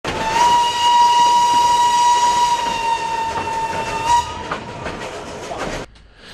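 Narrow-gauge steam locomotive's whistle blowing one long, steady blast, over the rattle of the train's carriages running on the track. The whistle stops about four seconds in, and the wheels keep rattling.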